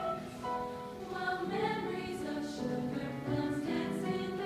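A mixed choir singing slow, held chords, the notes changing about every second.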